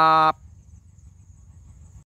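A man's voice draws out the last syllable of a spoken farewell for about a third of a second, then only a faint, steady high insect drone remains over low background noise.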